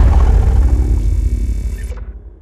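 Logo-reveal sound design: a deep boom and held tones ringing out and fading away steadily after the closing hits of an intro sting.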